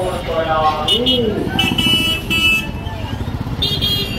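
Busy street traffic: a constant rumble of rickshaw and motorbike engines, cut by several short, high-pitched horn beeps, with people's voices in the first part.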